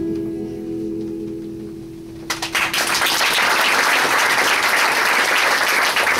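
The last chord of an acoustic guitar rings and slowly fades, then a little over two seconds in the audience breaks into applause, which is louder and carries on to the end.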